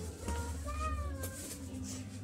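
A cat meowing: a short chirp, then one drawn-out meow that rises and falls in pitch.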